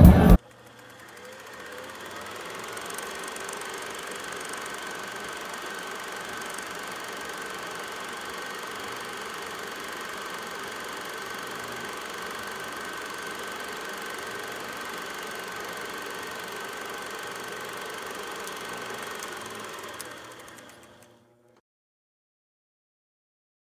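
A moment of loud crowd noise cuts off right at the start. A steady mechanical running sound with a high steady tone then fades in, holds evenly, and fades out near the end into silence.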